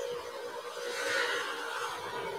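Faint steady hiss with a faint steady hum underneath, and no speech.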